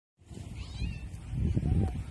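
Wind buffeting the phone's microphone: an uneven low rumble that swells toward the end, with a faint, short, high gliding cry about three-quarters of a second in.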